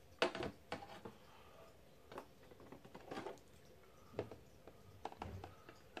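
Long metal tweezers tapping and clicking against a clear plastic jar enclosure. The sounds are faint, scattered handling knocks, about one a second.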